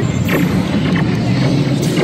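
Dark-ride soundtrack, with music and effects, playing over the steady low rumble of the ride vehicle moving along its track.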